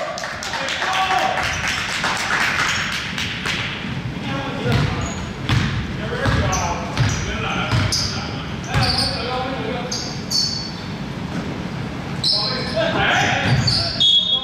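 A basketball bounced on a hardwood gym floor in irregular dribbles, with short high sneaker squeaks on the court.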